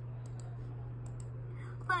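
Two pairs of short, sharp clicks from a laptop's mouse or trackpad as browser tabs are switched, over a steady low hum.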